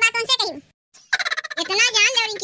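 A cartoon woman's high-pitched voice laughing in quick, warbling bursts, broken by a short pause a little over half a second in.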